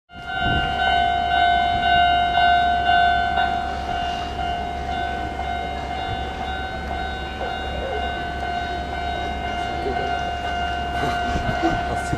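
A trackside electronic warning bell rings a steady, high tone, pulsing in the first few seconds. Under it, a Hanshin 8000 series electric train rumbles as it approaches, with a few sharp rail clicks near the end.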